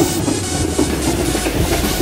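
Passenger coaches of a train rolling past at speed, with wheels clicking over the rail joints.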